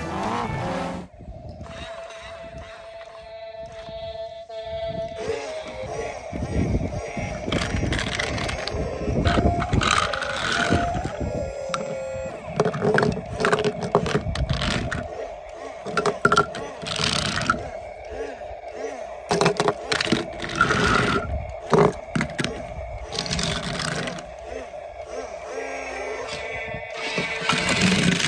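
Background music with repeated sharp clicks and clatter of die-cast metal toy cars being handled and set down on a plastic Lego baseplate, the clicks starting a few seconds in.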